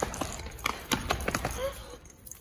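Running footsteps in a quick, irregular patter of knocks, with a brief voice sound near the end.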